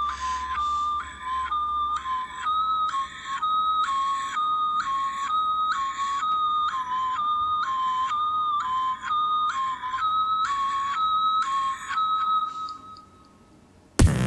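High, siren-like two-tone whistle that alternates between two close pitches about twice a second, opening a beatbox battle routine. It fades out about a second before the rapping starts.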